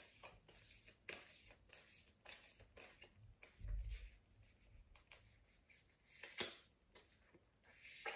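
Faint shuffling of a tarot deck in the hands: soft scattered card slides and taps, with a low dull bump a little before the middle.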